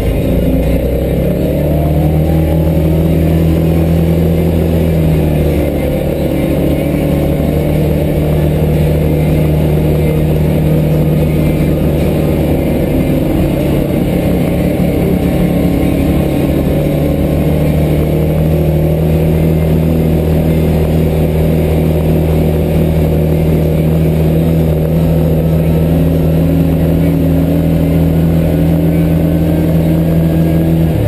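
Off-road vehicle's engine running at a steady travel speed, a loud drone that holds nearly one pitch, heard from the cab behind the windshield.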